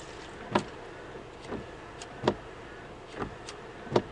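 Toyota RAV4 windscreen wipers sweeping a rain-wet windscreen, heard from inside the cabin: a knock at the end of each stroke, louder ones about every second and three-quarters with softer ones between, over a steady low hum.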